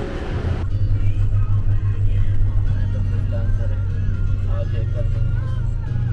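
Steady low rumble of a car engine and tyres heard from inside a 4x4 driving over sandy desert track, with music and singing playing over it.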